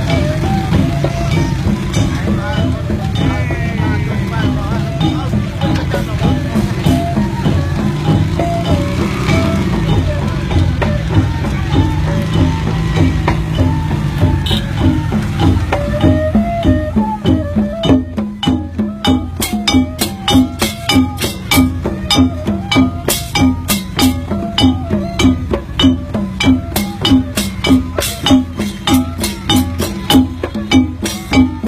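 Loud music with a melody in the first half. About halfway through, a strong, steady drum beat takes over, about two beats a second.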